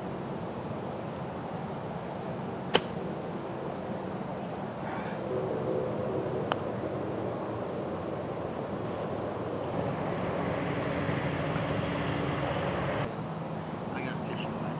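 A 60-degree wedge strikes a golf ball in a short chip, one sharp click about three seconds in; a few seconds later a putter taps the ball with a softer click.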